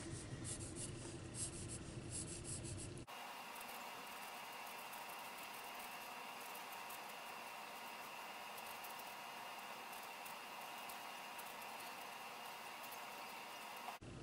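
Faint strokes of a Ticonderoga graphite pencil scratching lightly across paper as figures are sketched. Steady room hiss lies underneath, and the background tone changes abruptly about three seconds in.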